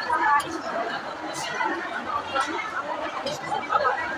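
Women talking together in casual conversation at a café table.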